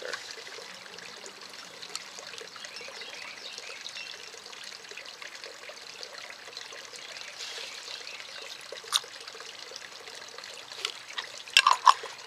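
Small amounts of liquid fertilizer squirted from a plastic syringe into a beaker of water, over a steady faint hiss. A single sharp click comes about 9 seconds in, and a few louder clicks near the end as a lid goes back on the jar.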